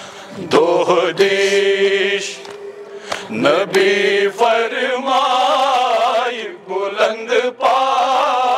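Men chanting a Kashmiri noha, a Shia lament for Husayn: a lead voice through a microphone with the group joining in, in long held notes that waver in pitch.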